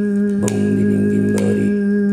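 Overtone (harmonic) singing: a steady hummed drone with a thin, whistle-like overtone held high above it. Twice, about a second apart, sharp wooden clicks of hand-held sticks struck together keep the beat.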